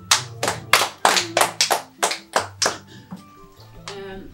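Hand claps: a quick, uneven run of about ten sharp claps over the first three seconds, then stopping, with background music holding low sustained tones underneath.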